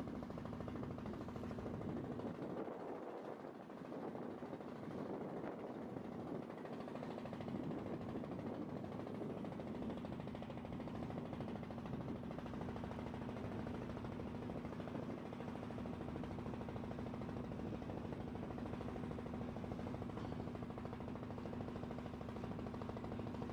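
A boat's engine running steadily under way, a constant low drone with no change in speed.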